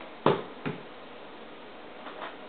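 Two short sharp clicks about half a second apart, the first louder, from a plastic makeup compact being handled, then only faint room hiss.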